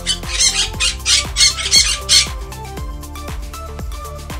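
Parrot squawking: a quick series of about six harsh squawks over the first two seconds or so, over electronic background music.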